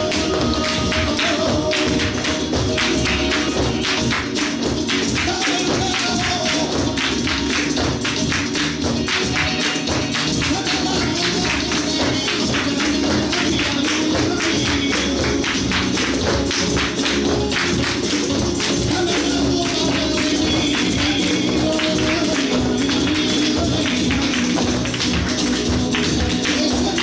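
Flamenco music playing at a steady volume, carried by a fast, dense run of sharp clicks and taps.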